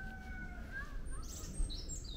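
Small birds chirping and whistling, with short high chirps in the second half, over a steady low rumble. A brief thump about a second and a half in.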